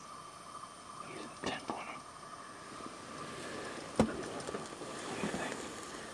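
Faint whispering and quiet handling rustle over a faint steady tone, with one sharp knock about four seconds in.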